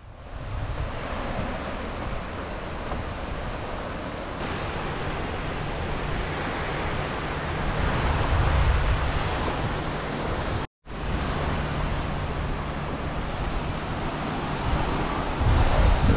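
Small waves washing onto a sandy beach, a steady rush of surf mixed with wind rumbling on the microphone. The sound cuts out completely for an instant about two-thirds of the way through, then resumes.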